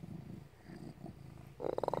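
Domestic cat purring steadily and low while it is stroked.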